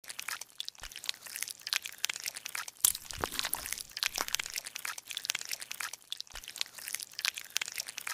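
Crunching, crackling sound effect: a dense run of small sharp snaps and crinkles, with a louder crack about three seconds in.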